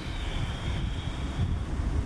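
Wind buffeting the microphone outdoors: an uneven low rumbling noise, with no speech.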